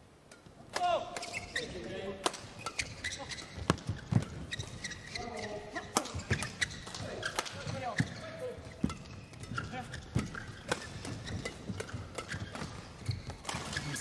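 Fast badminton doubles rally: a quick run of racket strikes on the shuttlecock, with short squeaks of court shoes between them, starting about a second in.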